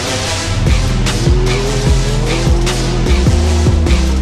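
Trap music with a heavy bass beat laid over the engine of a Can-Am Maverick X3 XRS side-by-side, a turbocharged three-cylinder, running hard down the trail. The engine note rises in pitch twice as it revs up.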